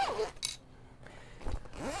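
Handling noise from an awning's front panel and its pole fittings: a short sharp click about half a second in, then a soft low thump about a second later.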